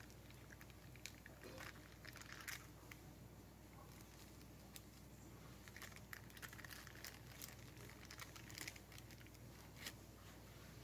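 Near silence with a few faint rustles and soft scrapes of butter paper being handled as warm baked almond dacquoise discs are peeled out of their rings.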